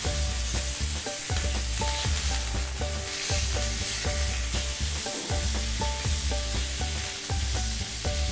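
Chicken legs frying in hot oil in a pan, a steady sizzle, under background music with a repeating bass line.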